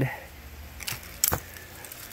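A few light, sharp clicks and a faint rustle of plastic plant plug trays and their paper labels being handled, three clicks close together about a second in.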